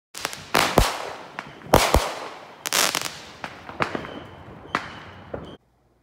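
Fireworks going off: a rapid run of loud bangs and crackling. The biggest bangs come at under a second in, near two seconds and near three seconds. Everything stops abruptly about five and a half seconds in.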